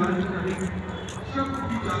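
People's voices talking, with a few light clicks.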